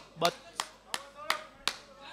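A run of sharp hand claps, evenly spaced at about three a second, five within two seconds, with a brief spoken word about a quarter second in.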